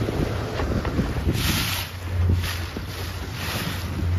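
Wind buffeting the microphone over the steady low hum of a boat's motor, with water washing around the boat. A louder rush of wind and water comes about a second and a half in, and a shorter one a second later.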